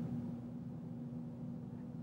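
Quiet room tone with a faint, steady low hum and no distinct events.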